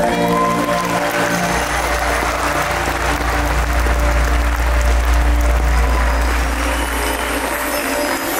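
Audience applauding as the show's music ends, a held chord fading out in the first second or so, with a low musical rumble continuing underneath.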